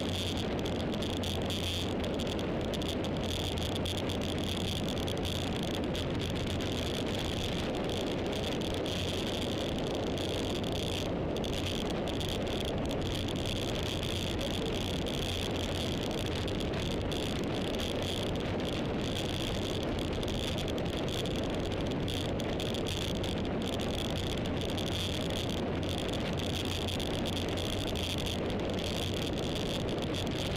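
Steady road and wind noise from a vehicle travelling along a paved road, with a low, even hum underneath and a constant high hiss, unchanging throughout.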